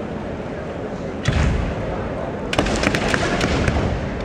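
Kendo exchange on a wooden floor: a heavy foot stamp about a second in, then a quick run of sharp bamboo shinai clacks and further stamps as the two fighters clash and close in, with shouts.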